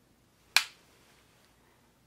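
A single sharp click about half a second in, from an eyeshadow brush and palette being handled.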